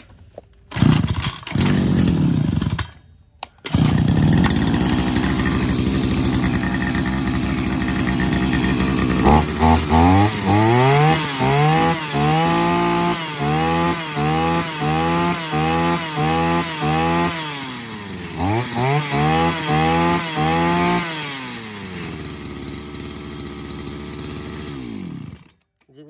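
Husqvarna 541RS brush cutter's 41 cc two-stroke engine being pull-started for a test run. It runs for about two seconds, stops, and starts again a second later. It idles, then its throttle is blipped in a long series of quick revs with a short pause, drops back to idle, and is switched off just before the end.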